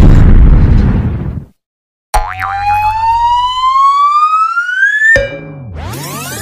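Cartoon sound effects: a loud explosion effect dying away, then after a short silence a rising whistle glide lasting about three seconds that cuts off suddenly, followed by a low wobbling, springy effect.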